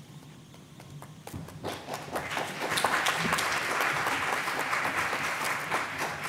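Audience applause: a few scattered claps about a second in, building into steady clapping from about two seconds on.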